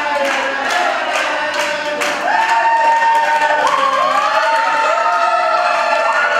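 A group of people singing a melody together, clapping in rhythm about three times a second at first, then holding long notes with the tune rising partway through.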